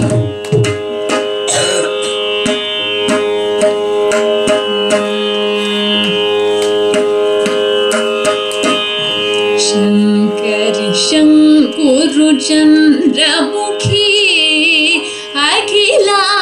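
Carnatic music in raga Saveri: mridangam strokes over a steady drone, joined in the last few seconds by a woman's voice singing with wide, oscillating gamakas.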